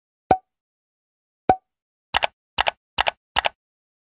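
End-screen animation sound effects: two short pops about a second apart, then four quick double clicks like mouse clicks, set on silence as the Like, Share and Subscribe buttons pop onto the screen.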